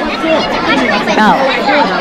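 Crowd chatter: many voices talking over one another in a busy restaurant.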